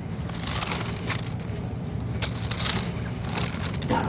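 Bible pages rustling and turning close to a microphone, in irregular crinkly bursts, over a low steady hum.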